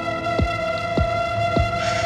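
Dramatic background score: a held synthesizer drone with a low, heartbeat-like thud about every 0.6 seconds.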